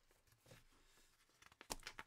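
Near silence: room tone, then a few light clicks and handling noises in the last half second.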